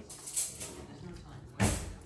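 Dog nosing at a cake in an open cardboard box: a short rustle about half a second in, then a louder scuff against the cardboard near the end.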